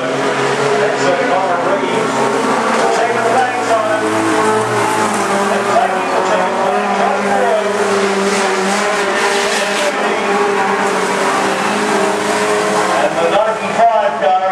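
Several small sedan race cars' engines revving and easing on and off the throttle as a pack laps a dirt speedway oval, the pitch of one engine over another rising and falling throughout.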